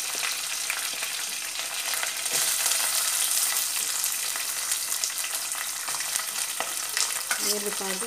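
Oil sizzling and crackling steadily in a stainless steel pot as curry leaves fry. About two seconds in, chopped onions and green chillies go in and the sizzle grows a little louder.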